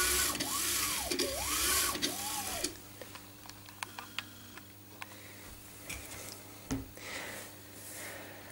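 AxiDraw pen plotter's carriage pushed back and forth by hand along its rails, its belts spinning the unpowered stepper motors, which whir with a pitch that rises and falls with each stroke, for about the first three seconds. After that come a few light clicks and a soft knock from handling the machine.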